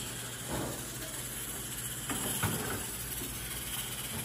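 Wooden spoon stirring sugar in a metal saucepan on a gas stove, with a few soft scrapes and taps over a steady low hiss.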